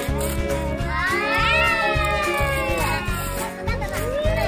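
Background music with a steady beat, and over it one long high-pitched cry that rises about a second in, then slowly falls for a couple of seconds.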